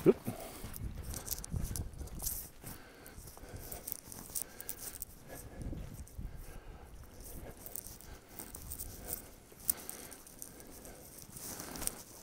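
Footsteps of a person walking, short irregular steps about once a second, crossing a paved road toward a leaf-covered trail, with a low rumble on the phone's microphone.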